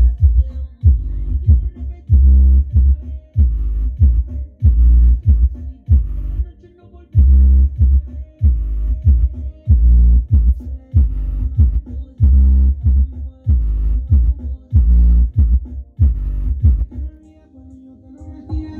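Hip-hop-style music with a steady beat of deep, punchy bass hits, played loud through the woofers of a Sony GTR88 mini hi-fi system, turned up to maximum with the Groove EQ setting, which makes the bass dry.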